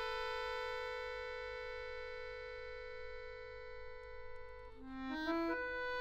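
Chromatic button accordion holding a long sustained chord, then playing a quick run of short notes about five seconds in that leads into a new held chord.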